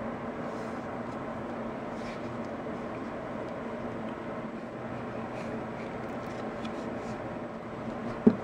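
Steady background hum with a low, even tone throughout, and a few faint soft touches as paper strips are pressed onto a card by hand.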